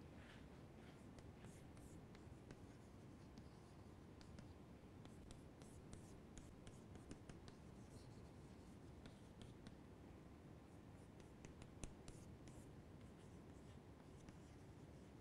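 Faint chalk strokes on a chalkboard: short, irregular taps and scratches as words are written, over low room hiss.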